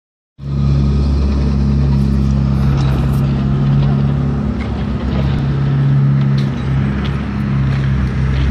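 Heavy diesel engine of paving equipment running steadily close by, a low even drone with scattered small clicks and rattles over it.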